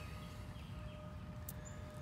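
Quiet outdoor ambience with a few faint, distant bird chirps and a faint steady hum, and a soft click about one and a half seconds in.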